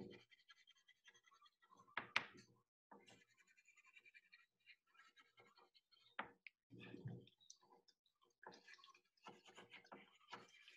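Faint scratching of a pen writing on paper, broken by a few light knocks from handling things on the table.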